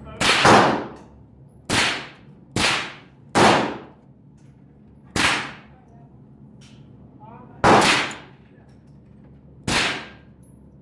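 Gunfire on a shooting range: seven sharp, loud shots at irregular intervals, each followed by a brief echoing tail. The rifle in view stays still in the hand, so the shots come from other shooters on the line.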